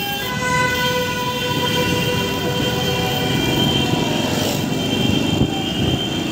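Several vehicle horns held in long, steady blasts, layered over the rumble of a motorbike ride and road noise.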